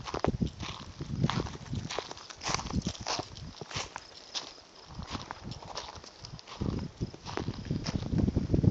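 Footsteps crunching irregularly on a gravel road shoulder, with low rumbling wind on the microphone coming in near the end.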